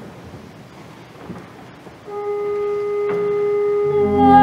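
Quiet church room tone, then about halfway through a single steady organ note starts and is held without change.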